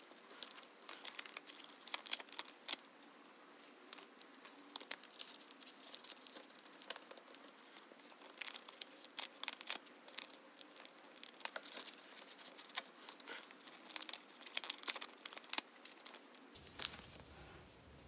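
Rigid plastic photo card sleeves being handled: faint, scattered crinkles, rustles and small ticks as the adhesive seal strips are peeled and the sleeved cards are squeezed into plastic binder pocket pages.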